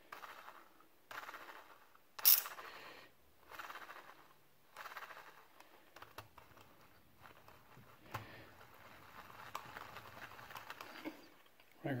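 Zebco 733 Hawg spincast reel, fitted with three added ball bearings, being cranked in short spurts: a faint whir from the reel with each turn, about once a second at first, then softer and less regular.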